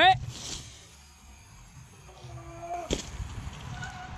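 A man's rising shout of "ouais" right at the start, then quiet outdoor background and a single sharp crack about three seconds in.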